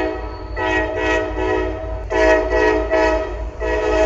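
Diesel freight locomotive's multi-note air horn sounding a string of short, choppy blasts, about eight in four seconds, over the low rumble of the passing train.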